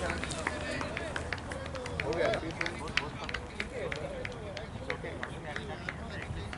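Indistinct voices of people talking some way off, with many irregular sharp clicks throughout.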